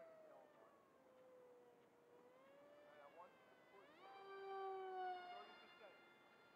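Faint whine of the RC delta wing's 2400kv brushless motor (Gforce LG2835) spinning a 6x4 propeller. Its pitch sags over the first two seconds, rises sharply about four seconds in, holds briefly, then fades out.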